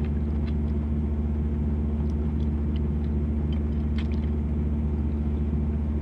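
Idling truck engine, a steady low drone, with a few faint clicks and swallows as a drink is taken from a bottle.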